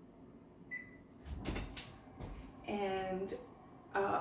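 Wall oven being opened: a short electronic beep from the oven controls, then the clunks and thuds of the oven door as it is pulled open. A brief hummed voice sound follows.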